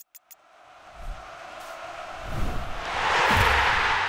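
Logo sting for an end card: a few short clicks at the start, then a whooshing swell that builds for about three seconds, with low thuds underneath as it peaks near the end.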